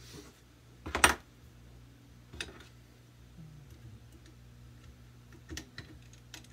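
Aluminium parts of a homemade pneumatic rifle clicking and knocking together as they are fitted: one sharp clack about a second in, a lighter one a little later, and small taps near the end, over a steady low hum.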